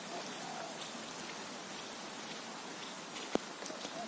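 Steady rain falling, an even hiss flecked with small drop ticks. A single sharp click about three seconds in is the loudest sound.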